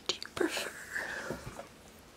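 A woman whispering close to the microphone, with a few soft clicks near the start.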